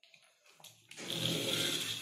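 After a faint click, the robot car's two small plastic-gearbox DC motors start about a second in and run steadily with an even whine, driving the wheels backwards because the motor leads are connected the wrong way round.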